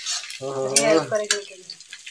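Oil sizzling in a wok as sliced onions fry, with a spatula stirring and clicking against the metal pan. A person's voice is heard briefly in the middle.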